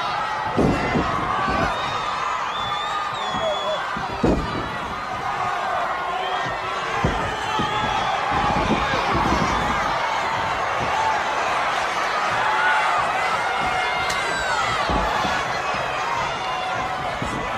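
Live arena crowd yelling and shouting throughout a pro wrestling match, with several dull thuds from the wrestlers in the ring, the loudest about four seconds in.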